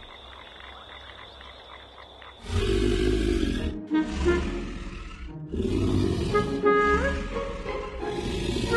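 A large cartoon dinosaur snoring in its sleep: a run of loud snores, one after another, each about a second and a half long, starting about two and a half seconds in after a quieter opening.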